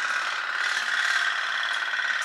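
Candle-heated pop-pop (putt-putt) toy steam boat running on the water, its tin boiler pulsing in a steady, fast buzzing hum.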